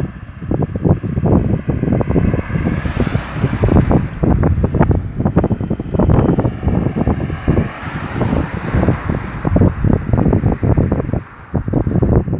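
Wind buffeting the microphone in irregular gusts, loudest throughout, with a car driving up the road and passing, its tyre hiss swelling and fading under the wind.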